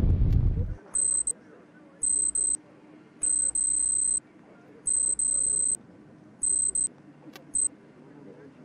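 Computer-style text readout sound effect: a high-pitched electronic beep in six bursts of varying length, the longest about a second, with short gaps between them. Music fades out in the first second.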